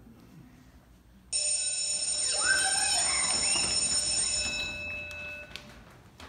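A bell rings, starting suddenly about a second in and holding steady for about three seconds before fading out, likely a school-bell cue for the scene change.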